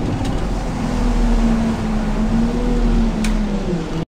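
Bus engine and road noise heard from inside the driver's cab while under way: a steady rumble with an engine note that rises slightly about a second in and drops back near the end, and two brief clicks.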